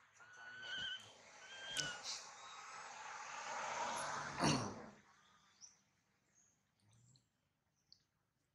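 Infant long-tailed macaque screaming: a harsh, high cry with short squealing notes that grows louder for about five seconds and then breaks off.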